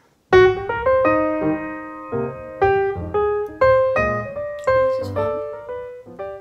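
Piano music: a melody of single notes struck one after another, about two a second, each ringing and fading. It starts suddenly just after a brief silence.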